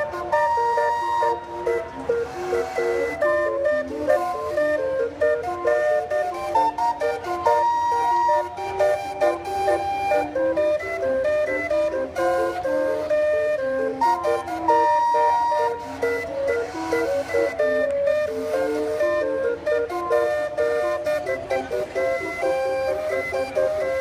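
Steam calliope playing a tune: chords of held, whistle-like notes, starting suddenly.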